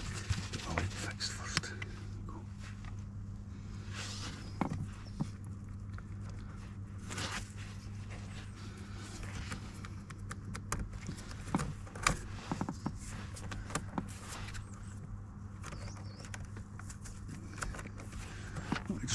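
Gloved hands working plastic wiring connectors and harness cables under a car seat: scattered clicks and rustles over a steady low hum.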